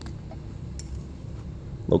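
Quiet room background with faint handling of a small metal collar insignia and shirt fabric, including one small click just under a second in.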